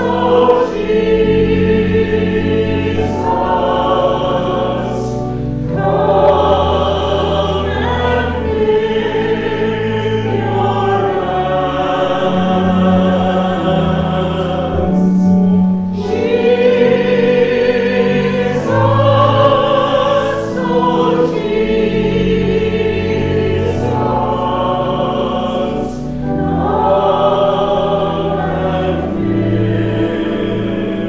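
A choir singing a hymn in slow, sustained phrases with short breaks between them, over steady low accompanying bass notes.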